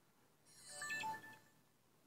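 Short electronic chime of a few notes from a Sony Xperia Z2 smartphone, starting about half a second in and lasting about a second.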